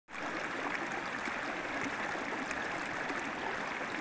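Small mountain stream running high with snowmelt, its water babbling steadily over rocks and a small drop.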